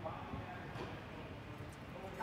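Quiet indoor tennis hall background with faint, distant voices; no ball strike is heard.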